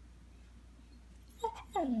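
Small dog whining to get its owner's attention: a short high whine about one and a half seconds in, then a louder, longer whine that slides down in pitch near the end.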